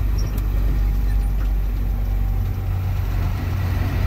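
A big truck's engine heard from inside the cab, running steadily while driving, its sound sitting mostly low.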